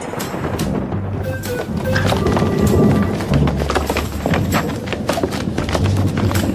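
Thunder sound effect, very loud, rumbling with many sharp crackles, over a light music track.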